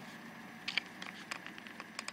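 Faint handling noise of a camera lens held in the hand: a quick string of light clicks and taps in the second half, over a faint steady hiss.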